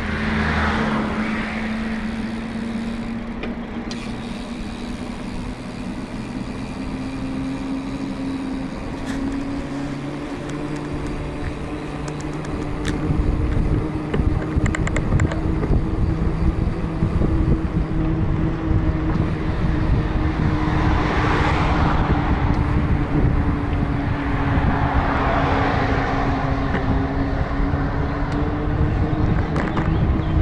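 Bicycles rolling along a paved path with a steady hum from knobby tyres on tarmac, drifting slightly in pitch with speed. Heavy wind buffeting sets in on the microphone partway through. Cars rush past on the road alongside: once at the start and twice near the end.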